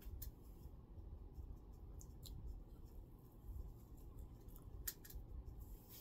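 Faint chewing of sugar-coated marshmallow Peeps candy, heard as scattered soft clicks from the mouth.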